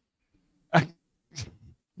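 A short 'uh' from a speaker, then a brief, broken animal call from a dog about a second and a half in.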